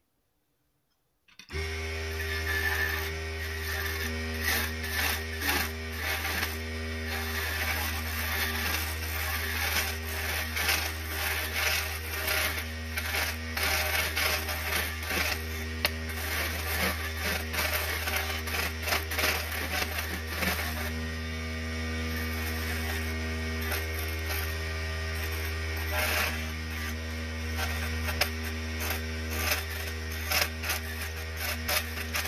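A mini wood lathe's small motor switches on about a second and a half in and runs steadily with a low hum, while a small chisel scrapes and cuts the spinning wooden honey dipper, giving an irregular rasping over the hum.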